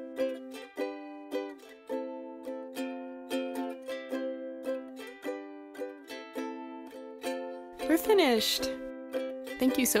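Ukulele music: a run of plucked notes and chords at a gentle, even pace. About eight seconds in, a short, noisy burst plays over the ukulele.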